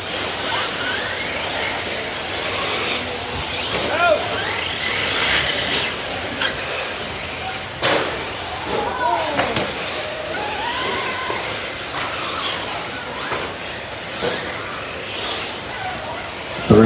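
Several nitro-powered 1/8-scale RC buggy engines revving up and down as the buggies lap the track, with a sharp knock about halfway through.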